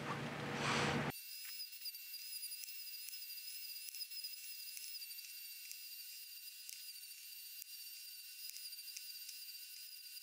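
A flexible-shaft rotary tool with a sanding drum runs at high speed, grinding down the plastic keep-outs on an electrical receptacle. It sounds fuller for about the first second, then settles into a thin, steady, high-pitched whine.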